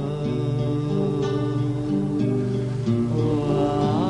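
Live Pamiri music: a man sings long held notes over a steady instrumental accompaniment, bending the pitch now and then.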